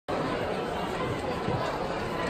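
Crowd chatter in a large hall: many indistinct voices talking at once, at a steady level.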